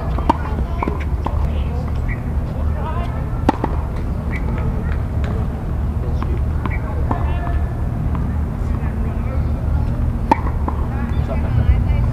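Tennis ball struck by a racket, a few separate sharp pops, the loudest about three and a half seconds in and again about ten seconds in, over a steady low rumble.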